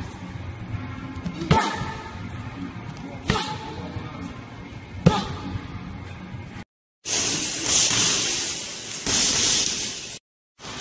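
Strikes landing on pads in a gym: three sharp smacks, evenly spaced about a second and a half apart. After a brief dropout the sound changes to a loud, even noise.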